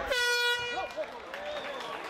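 End-of-round horn sounding one steady blast for just under a second, signalling the end of the round. Voices and shouts from the crowd and corners follow.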